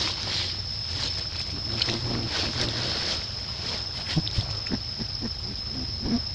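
Outdoor forest ambience: a steady high-pitched insect drone with a low hum underneath and scattered faint clicks.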